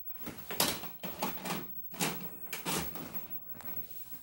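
A VHS cassette going into a VCR and the deck's loading mechanism taking it in: a series of clunks and clicks over the first three seconds, fading near the end as the tape starts playing.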